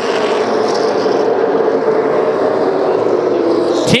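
Super late model stock cars' V8 engines running at racing speed around the track, a steady drone of several engines at once.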